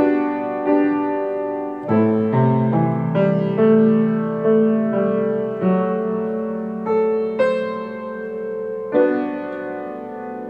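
Piano played slowly and softly in a hymn-like style: sustained chords over a low bass line, struck about once every half second to a second and a half and left to ring and fade.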